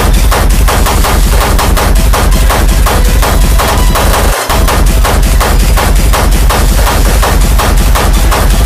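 Hard techno: a relentless stream of fast, distorted hits over a heavy, sustained bass. The bass drops out briefly about four seconds in.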